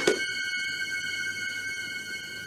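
A sustained high ringing chord of several steady tones, fading slowly, with a short knock at the very start.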